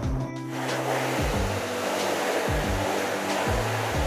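Water spraying from a hose onto a silkscreen's mesh, washing out the unexposed photo emulsion to open up the stencil. It is a steady hiss that starts about half a second in, over background music with a low bass line.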